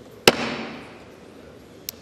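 A gavel struck once, sharply, on the rostrum to call the House to order, its crack ringing briefly in the large chamber; a second, lighter tap comes near the end.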